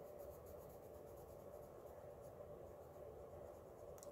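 Faint scratching of a CastleArts colored pencil stroking over coloring-book paper in quick, light strokes.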